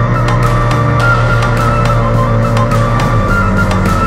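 Loud background music with a steady beat, with a motorcycle running underneath it.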